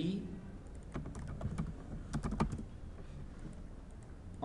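A short run of keystrokes on a computer keyboard, clustered from about a second to two and a half seconds in.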